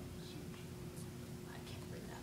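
Faint whispered speech, a person murmuring to herself, over a steady low hum.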